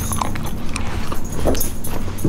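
Dog whining eagerly, a few short rising whines, begging for a pepperoni treat.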